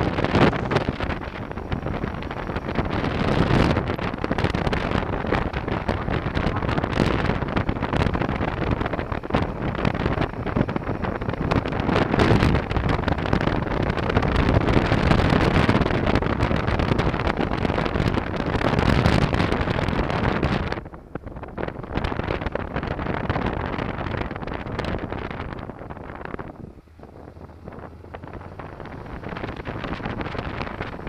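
Wind rushing over the camera microphone on a moving Honda NC700 motorcycle, with the bike's parallel-twin engine running underneath. The wind noise drops off suddenly about 21 seconds in and dips again around 27 seconds.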